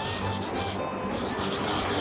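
A whole onion being grated on a ceramic grater dish: a rasping rub repeating with each back-and-forth stroke, as the onion is grated down to extract its juice.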